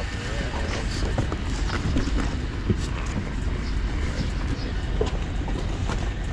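Casters of a wooden furniture dolly rolling under a heavy boxed load: a steady low rumble with a few light knocks.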